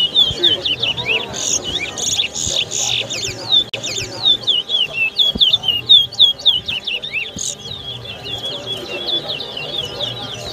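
Caged towa-towa seed finches singing in competition: a fast, continuous twitter of short, sharply falling whistled notes, one after another with hardly a break.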